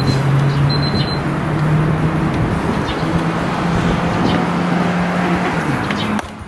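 A motor vehicle's engine running nearby with steady road noise, its low hum stepping up a little in pitch a couple of times.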